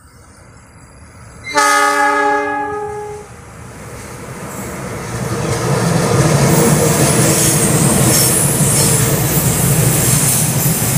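CC206 diesel-electric locomotive sounding its multi-tone horn once, about a second and a half in, for about a second and a half. Then the locomotive's engine and the wheels of its passenger train on the rails grow loud as the train passes close by, staying loud to the end.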